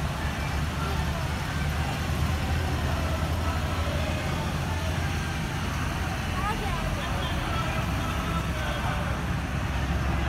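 A steady low rumble of road vehicles, with scattered voices of people talking in the background.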